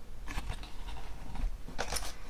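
A cardboard gift box and a paper card being handled: a few short soft knocks and rustles, the loudest near the end, over a low steady room hum.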